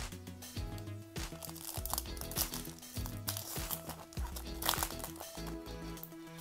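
Crinkling and tearing of a foil trading-card pack wrapper being opened by hand, in sharp crackles at several points, over background music.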